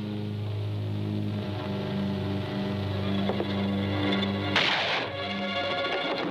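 Dramatic orchestral film score with long held low notes, a short crash about four and a half seconds in, then higher sustained notes.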